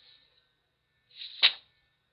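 A single short whoosh of air, rising over a fraction of a second to a sharp peak about a second and a half in, then stopping.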